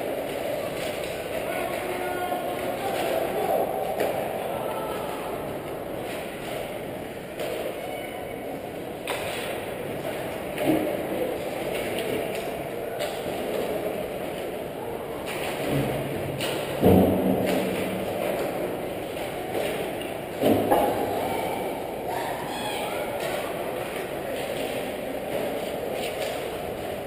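Ice hockey rink ambience picked up at the goal: skates scraping the ice and distant players' voices echoing in the hall, with a few sharp knocks of pucks and sticks, the loudest about 17 seconds in.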